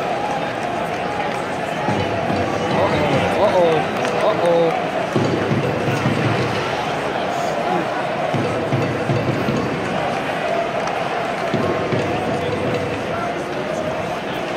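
Hockey arena crowd hubbub: indistinct chatter of nearby spectators over the steady murmur of a large crowd, with music faintly playing over the arena sound system.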